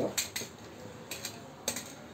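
A utility knife cutting into a slab of paraffin wax: a handful of sharp clicks and crackles as the blade cuts and breaks the wax, two close together near the start and the loudest near the end.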